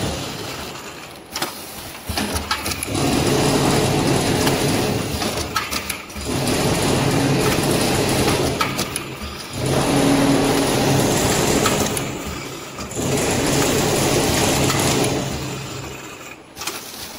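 Automatic vertical pillow-bag packing machine with a screw auger powder filler running. Its mechanical noise and hum rise and fall in repeating cycles about every three to three and a half seconds, with short quiet dips between them.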